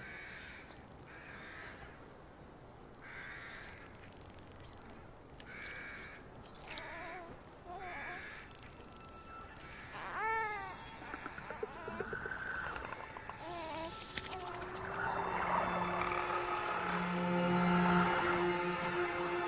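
Crows cawing, a harsh call every second or two, through the first half. In the second half, low sustained music tones swell and grow loudest at the end.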